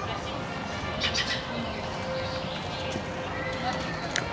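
Small birds chirping in a park, with a quick run of high chirps about a second in, over a steady murmur of crowd voices.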